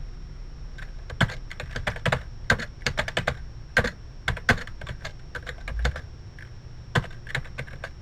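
Typing on a computer keyboard: quick, irregular runs of keystrokes, a pause about five seconds in, then a few more keys near the end.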